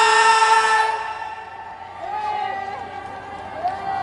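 A man's amplified singing voice holds a long note with no instruments beneath it, ending about a second in, followed by a quieter voice line and faint crowd sound.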